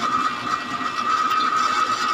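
A steady background hiss with a thin, constant high-pitched whine; no voice.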